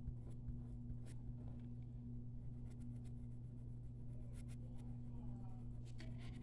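Pen scratching on paper in short, faint, irregular strokes as black markings are filled in on a drawing, over a steady low hum.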